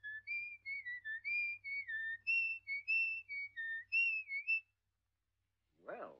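A person whistling a tune: a run of short separate notes, stepping up and down, that stops about four and a half seconds in.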